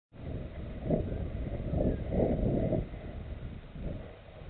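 Wind buffeting a body-worn camera's microphone: low, gusty noise that swells about a second in and again between about two and three seconds, then eases.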